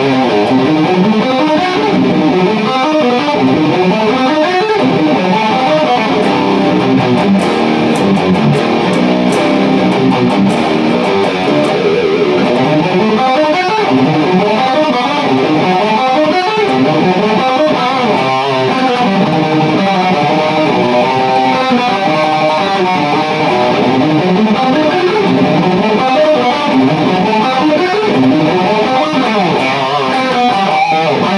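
Seven-string electric guitar in B standard tuning, played with distortion: a continuous fast metal riff at full speed, with runs of single notes climbing and falling along the neck.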